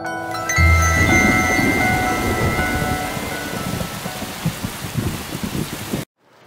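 A loud thunderclap about half a second in, then steady rain with rumbling thunder that cuts off abruptly at the end. The last notes of a glockenspiel tune ring out underneath for the first few seconds.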